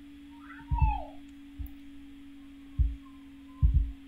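Small-room background with a steady electrical hum and several soft low thumps from desk and mouse handling at a computer. About a second in comes one short pitched sound that rises and then falls.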